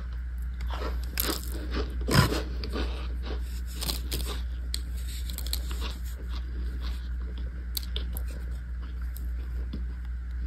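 Compressed cornstarch chunks crunching: a string of dry, crisp crunches, loudest about two seconds in, then lighter crackles.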